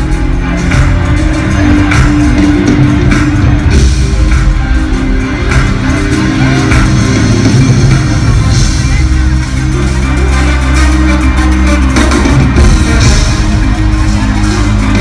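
Live reggaeton band music played loud through a concert PA in a large hall, heavy in the bass, recorded from among the crowd.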